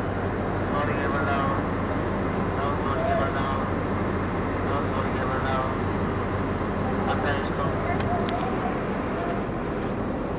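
Steady low mechanical drone, like engines or machinery running, with distant voices calling out now and then.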